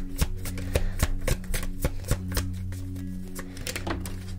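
A deck of tarot cards being shuffled by hand: a quick, irregular run of crisp card snaps and taps. Soft background music with a steady low drone underneath.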